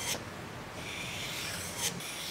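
A steel hook-knife blade is drawn along 800-grit abrasive paper, giving a steady, scratchy rub that lasts most of two seconds. It is the blade's bevel being honed in one long stroke, with a light tick at the start and another near the end.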